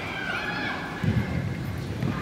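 Young players calling out to one another during play, high calls that glide in pitch, with a dull thump about a second in.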